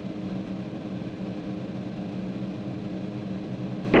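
Cirrus SR22's piston engine and propeller droning steadily at cruise power, heard inside the cabin as an even, low multi-pitched hum.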